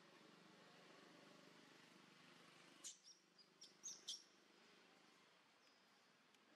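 Faint, short, high chirps from a small bird: about six quick notes just after the middle, over quiet forest background.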